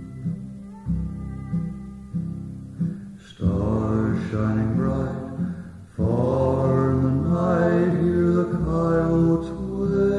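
Instrumental break in a slow western song: acoustic guitar picking, joined about three and a half seconds in by a violin carrying the melody in long notes.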